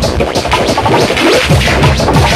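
Fast electronic dance music, techno mixed by a DJ. The regular kick drum drops out for about a second and a half, leaving the mid and high layers playing, then comes back near the end.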